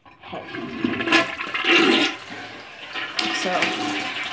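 Toilet flushing: water rushes into the bowl just after the start, loudest about a second or two in, then eases off to a quieter flow.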